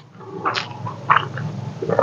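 Close-miked eating sounds of a man chewing a mouthful of rice and pork: wet chewing and lip smacks in several short bursts.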